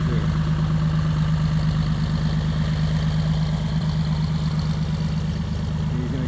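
Beech Bonanza's 300 hp six-cylinder piston engine and propeller running at taxi power as the plane rolls past: a steady, loud low drone that eases slightly near the end.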